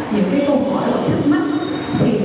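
Speech: a voice talking into a microphone, carried over loudspeakers in a large hall.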